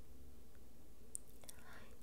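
Quiet pause in a small room with a faint steady hiss, one small click a little past halfway, and a soft breath near the end.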